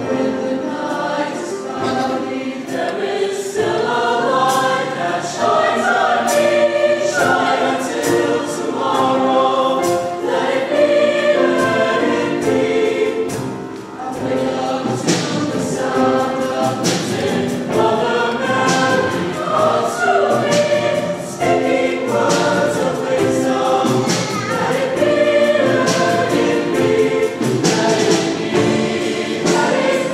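A mixed high school choir of boys' and girls' voices singing in parts, loud and sustained, with a brief softer moment about halfway.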